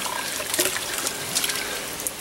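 Ditch water splashing and trickling around a mesh scoop net worked through shallow water, with a few small splashes.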